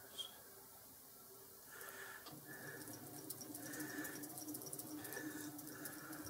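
Faint mechanical whirr with light ticks from a Boxford lathe's carriage being wound along to run the tool holder past a dial indicator. The steady hum sets in about two seconds in.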